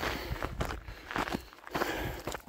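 Footsteps on a dry, stony dirt trail: a few uneven steps.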